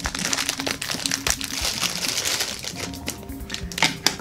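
Clear plastic packaging around a toy figure crinkling and rustling as it is handled and pulled open, over quiet background music.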